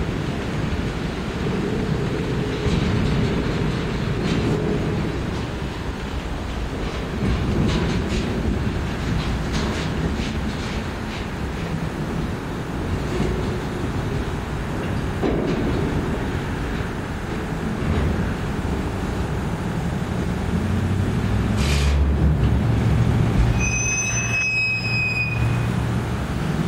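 Freight cars (centerbeam flatcars and a covered hopper) rolling slowly past close by: a continuous rumble of steel wheels on rail with scattered clacks over the joints. Near the end comes a brief high-pitched squeal.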